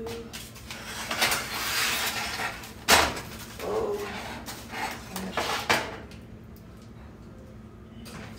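A foil-lined baking dish being handled and put into an oven: rustling and clatter of cookware, with one sharp knock about three seconds in.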